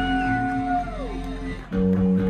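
Live rock band playing: a high held note slides up, holds and slides back down over a low drone, then the bass and guitars come in loudly near the end.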